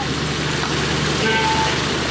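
Egg curry sauce sizzling in a wok over a gas burner, a steady frying hiss with a low hum underneath.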